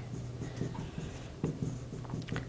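A pen writing on a display screen: a run of light, quick strokes as a short word is written.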